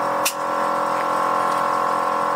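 Steady mechanical hum, with a single sharp click about a quarter second in as a valve on the trailer's air-suspension system is worked.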